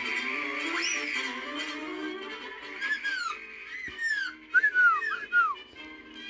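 Music, then from about three seconds in a run of about six short whistles, each rising briefly and falling, over quieter music.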